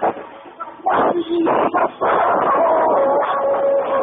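Live rock band in a muddy, low-quality recording: distorted electric guitars, bass and drums playing short loud hits about a second in, then a longer loud stretch with a held note that sinks slightly in pitch and cuts off just before the end.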